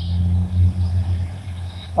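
A steady low hum, with no speech over it.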